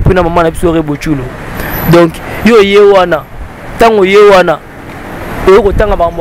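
Speech only: a person talking in short phrases with pauses, over a low background rumble.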